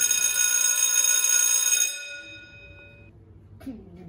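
A bell sound effect rings with several steady high tones for about two seconds, then stops and fades out over about another second.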